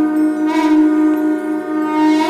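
Conch shells (shankh) blown together in one steady, held horn-like note with a rich buzzing overtone stack, over a music track.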